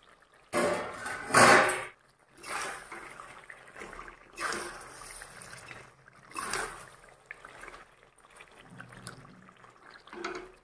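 Metal perforated spatula stirring chicken feet through thick, wet masala gravy in a metal kadhai: several wet scraping strokes, the loudest in the first two seconds, then weaker ones every couple of seconds.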